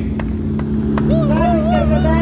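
Rally car engine running at a steady low pitch as the car rolls slowly past. About a second in, a drawn-out voice with a wavering pitch sounds over it.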